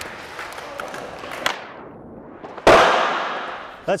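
Skateboard wheels rolling on concrete, then about two-thirds of the way through a single loud, sharp smack of a skateboard landing on the concrete, echoing and dying away over about a second in the large hall.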